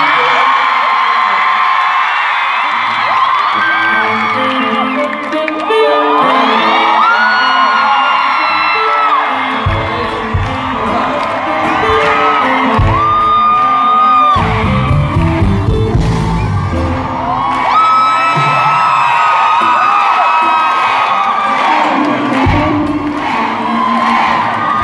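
A live pop-rock band playing through a concert PA, with a stepping bass line and heavier drums coming in about ten seconds in. A crowd of fans screams and cheers over the music throughout.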